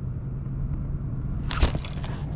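A steady low rumble with a faint hum, then about one and a half seconds in a short, loud knock and rustle of handling noise as the fishing rod nearly slips from the angler's grip.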